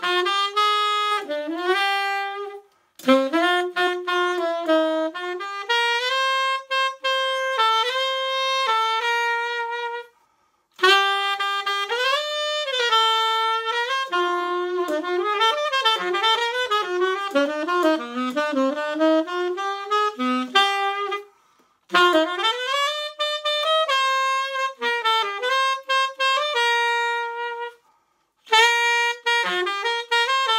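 A Lineage tenor saxophone, hand-built by Dave Walker, played solo and unaccompanied in jazz phrases: a single melodic line broken by four short breath pauses, with a fast run of notes in the middle.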